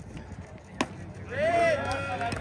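A pitched baseball smacking into the catcher's mitt with a single sharp pop, followed about half a second later by a long, drawn-out shouted call, the loudest sound here.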